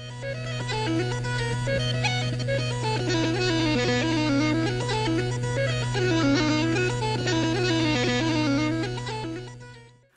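Uilleann pipes played: a melody on the chanter over the steady low sound of the drones. The music fades out near the end.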